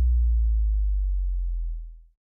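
A deep, steady synth sub-bass note left ringing at the end of an EDM trance track, slowly fading and then dying away near the end.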